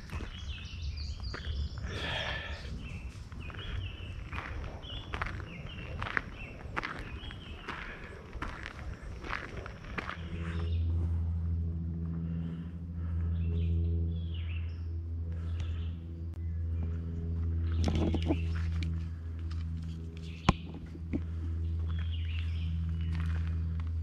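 Footsteps crunching along a gravel trail, with small bird chirps, for about the first ten seconds. The steps then stop, and a steady low engine hum sets in suddenly and keeps going.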